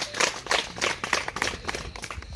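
A few people clapping their hands: a quick, uneven run of claps that thins out near the end.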